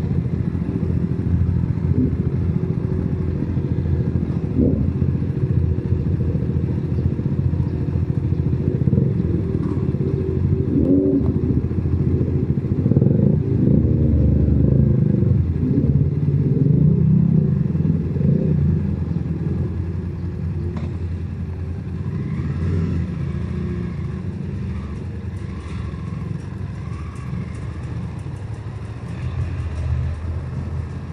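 BMW F 850 GS parallel-twin motorcycle engine running at low revs, getting louder about midway and easing off again toward the end.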